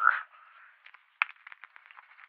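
A man drinking water: a run of small gulps and wet mouth clicks over about a second, the sharpest just past one second in, heard through a thin, phone-like microphone.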